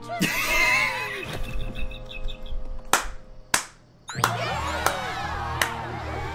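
Cartoon episode soundtrack: music, with two sharp hits about three seconds in, a brief drop-out just before four seconds, then the music picks up again.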